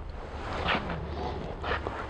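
Motorhome generator-compartment access hatch being unlatched and swung open by hand: two short scraping, rattling sounds about a second apart, over a steady low hum.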